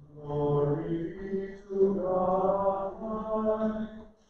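A single voice chanting a slow, held line of several notes, the kind of sung response that follows the opening prayer in an Episcopal service.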